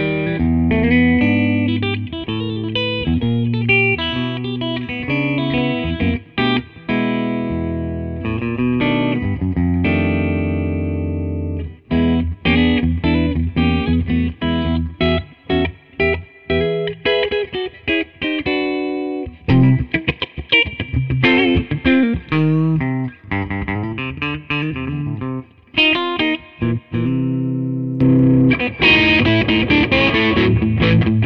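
Gibson Memphis 1963 ES-335 TD semi-hollow electric guitar played through an amp on the middle pickup setting, both humbuckers together. It plays a run of picked notes and chords with short breaks, and lets one chord ring for about two seconds near the middle.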